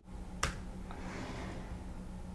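A single sharp click about half a second in, then quiet room tone with a low steady hum.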